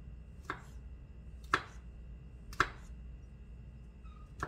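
Kitchen knife slicing through mushrooms onto a wooden cutting board: three sharp knocks of the blade against the board about a second apart, the second and third loudest, over a low steady hum.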